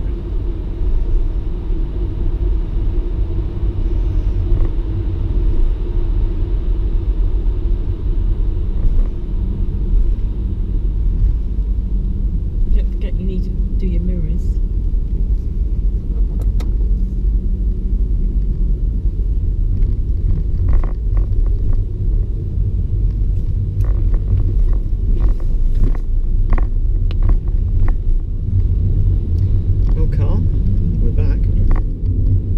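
Low, steady rumble of a car's engine and tyres heard from inside the cabin as it drives slowly off the ferry down the vehicle ramp. From about twenty seconds in there is a run of short sharp knocks and clicks.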